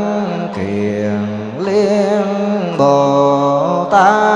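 Vietnamese Buddhist monks chanting a liturgical invocation into a microphone, drawn out in long held notes that step to a new pitch every second or so, with a lower voice joining part of the time.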